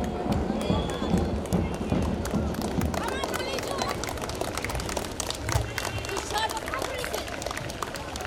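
A mix of people's voices and music, with many short sharp clicks scattered through it.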